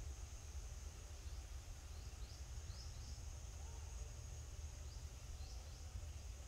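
Faint outdoor ambience: a steady high-pitched insect drone with a few faint, short rising bird chirps scattered through it, over a low steady rumble.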